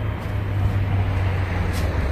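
Steady outdoor background noise: a low rumble under an even hiss, with a faint short click near the end.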